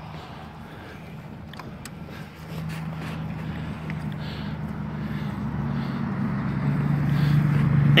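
A steady low motor-vehicle engine hum that grows steadily louder through the second half.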